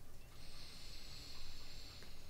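A person breathing out through the nose close to a microphone: a soft hiss that starts a moment in, with a faint high whistle over it.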